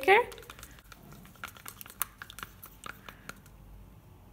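A stir stick scraping and clicking against the sides of a plastic cup as thick acrylic paint is stirred: faint, irregular ticks and scrapes.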